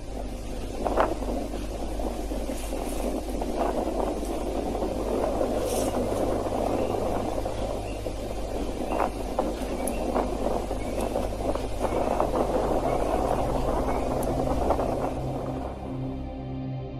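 Volcanic eruption heard as a steady rushing rumble, with a few sharp cracks, the loudest about a second in. A low music drone runs underneath.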